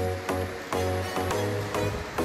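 Background music with a steady beat and a pulsing bass line.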